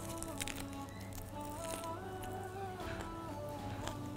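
Background music: a melody of held notes stepping in pitch over a steady low bass.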